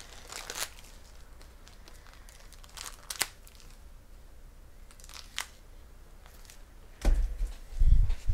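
Foil trading-card pack wrappers crinkling and tearing in a few short bursts a couple of seconds apart, followed near the end by dull low thumps of handling close to the microphone.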